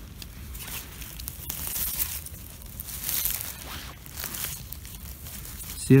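Dry pine-needle forest litter rustling and crunching underfoot and under a hand, in several uneven swells.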